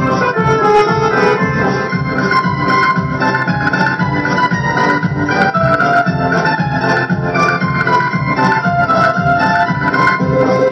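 Instrumental interlude of a Hindi film-song backing track, an organ-like keyboard carrying the melody over a steady beat.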